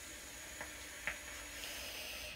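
Vape coil sizzling with a faint, steady hiss as a long drag is pulled through the atomizer, with two faint ticks about halfway through.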